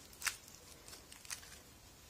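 Aluminium-foil nail wrap crinkling as it is pulled off a fingertip: a short crackle about a quarter second in, then a fainter one about a second later.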